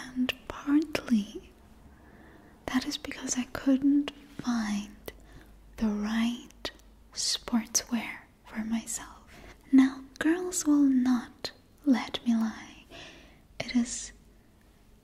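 A woman whispering close to the microphone.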